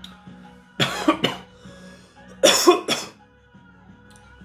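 A man coughing in two short fits, about a second in and again about two and a half seconds in, as after inhaling harsh hemp smoke. Quiet background music plays underneath.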